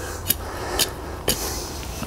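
Hand trowel scraping and digging into loose soil: three short scrapes about half a second apart.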